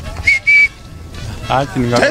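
Two short, high whistle blasts in quick succession, the second a little longer, followed by a voice resuming speech near the end.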